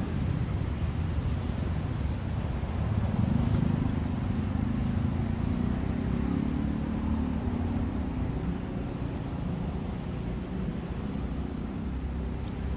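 Street ambience dominated by a steady low rumble of motor traffic, swelling briefly about three seconds in.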